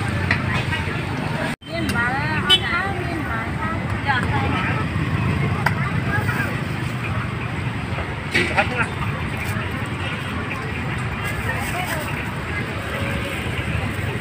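Indistinct background voices over a steady, noisy din of street ambience. The sound cuts out sharply for a moment about one and a half seconds in.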